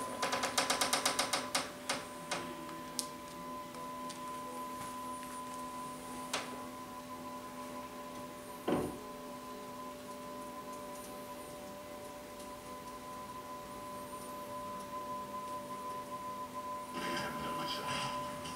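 Electric TV lift running with a steady motor hum as it raises the television out of the sideboard. A rapid run of clicks comes in the first couple of seconds, then a few single knocks, the loudest about nine seconds in. A burst of noisier sound joins near the end.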